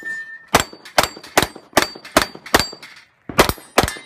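A .38 Super compensated race pistol firing a rapid string of about ten shots at steel plates, with a short pause a little after three seconds. Several shots are followed by the ringing ding of a struck steel plate.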